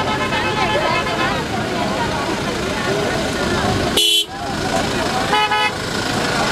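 Car horn sounding in short toots, about four seconds in and again briefly just before the end, over a crowd of men talking.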